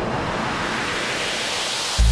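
A steady rushing noise like surf or wind, with no tune in it, brightening a little in the middle, lying between two stretches of background music.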